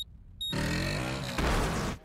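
Arcade motorcycle racing game sound effects: a last short high start-countdown beep, then a loud rush of bike engine noise that breaks into a deeper crash-and-explosion boom about a second later, ending abruptly.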